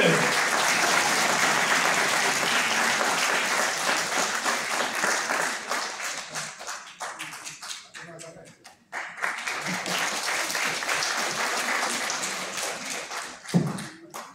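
Audience applauding: dense clapping at first, thinning to scattered claps about six to eight seconds in, then swelling again. A single thump near the end, after which the clapping stops.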